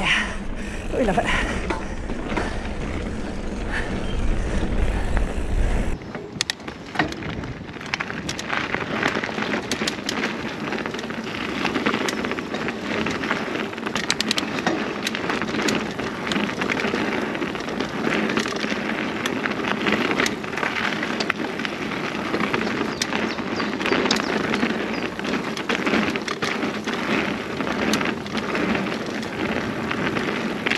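Mountain bike riding fast down a dirt and loose-gravel trail: steady tyre noise on the ground with frequent sharp clicks and rattles from the bike. For the first six seconds, deep wind rumble on the camera microphone sits under it and then stops abruptly.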